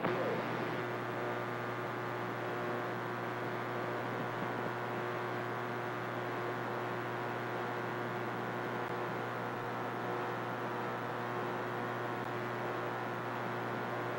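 Steady static hiss with a constant low hum from a radio receiver, with nobody transmitting on the channel.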